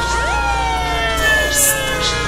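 A man's long scream: the pitch jumps up sharply just after it starts, then slowly slides down for about two seconds.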